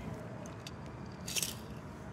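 A die-cast toy car pushed by hand along a plastic Hot Wheels track on gritty concrete, with low rubbing and rolling noise. There is a brief crunchy scrape about one and a half seconds in.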